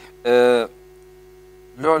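A man's short held voiced sound, like a hesitant 'eeh', kept at one steady pitch for under half a second near the start. A faint steady low hum runs underneath throughout.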